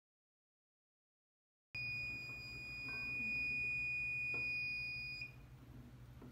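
SilverTron Elite colloidal silver generator sounding its long completion alert: a single steady, high-pitched electronic beep that starts a couple of seconds in and holds for about three and a half seconds. It signals that the 20 ppm batch has finished.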